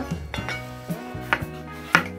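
Kitchen knife slicing through half an onion and knocking on a wooden cutting board, four cuts about half a second apart, over background music.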